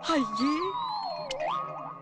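Comic sound effect on a film soundtrack: a sliding tone falls slowly for about a second and a half, with a short click near the middle. It then slides back up and holds a steady note.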